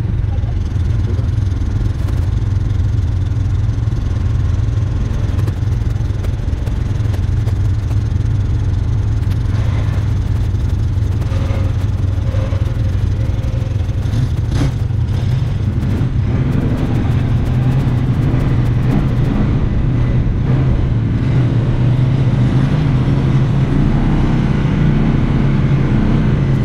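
UTV engine running close to the microphone, idling steadily and then pulling harder as the vehicle moves off in the second half. A single sharp click comes about halfway through.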